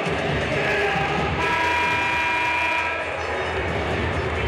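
Basketball arena horn sounding once, a steady chord lasting about a second and a half, over the murmur of the crowd.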